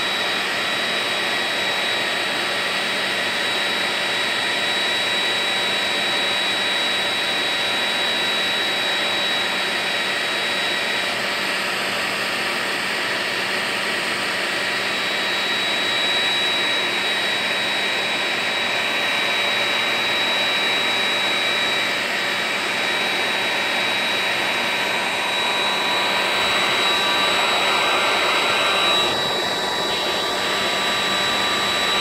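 Handheld hair dryer running steadily: a constant rush of air with a high whine from its fan motor, blowing hot air along a battery to shrink a clear plastic wrap onto it. The sound shifts a little near the end as the dryer is moved.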